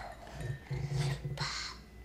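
A low, voice-like sound broken into several short pieces, followed by a breath.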